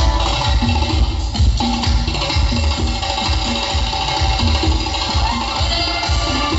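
Live Tajik band music with a steady drum beat, played on congas, keyboard, long-necked lute, flute and violin; no clear singing is heard.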